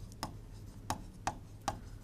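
Marker tip tapping against a whiteboard while writing: about five sharp, irregular taps over a faint low hum.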